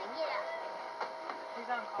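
Indistinct people talking at a distance, with a couple of faint sharp clicks about a second in.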